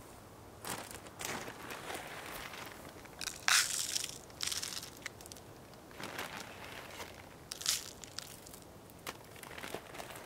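Irregular crunching and rustling from handling birdseed and moving about on dry forest litter as a cup feeder on a tree trunk is filled with seed, with the loudest crunch about three and a half seconds in.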